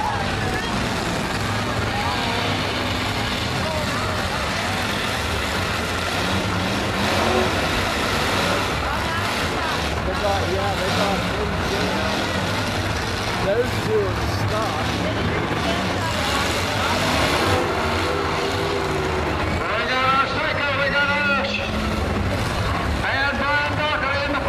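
Demolition derby cars' engines running in the arena, a steady low rumble, with people's voices mixed in that grow clearer in the last several seconds.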